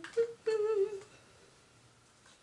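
A woman humming a few short notes, which stop about a second in.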